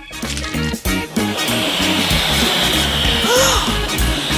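A long, steady airy hiss starts about a second in over light background music. It is an inflating sound effect for a bubblegum bubble being blown up to giant size.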